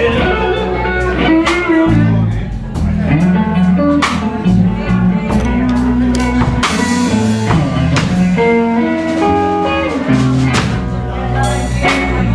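Live electric blues band: an electric guitar playing lead lines with bends and slides over electric bass and a drum kit.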